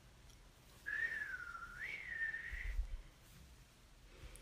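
A single whistled note, just under two seconds long, that wavers: it dips in pitch, then rises and holds before stopping.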